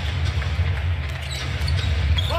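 Basketball being dribbled on a hardwood arena floor, over steady low arena noise.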